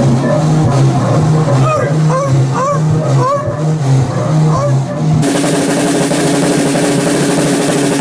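Music with a low two-note bass riff repeating and sliding, whooping glides over it; about five seconds in it cuts suddenly to a drum kit playing, cymbals washing over the kit.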